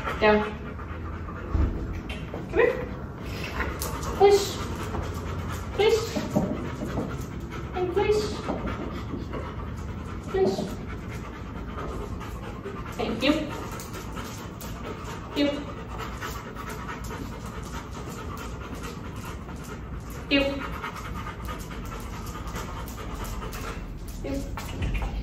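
A hound dog panting steadily, broken every couple of seconds by short pitched vocal sounds.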